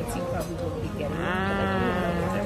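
Voices talking, with one long drawn-out vocal note about a second in, its pitch rising and then falling.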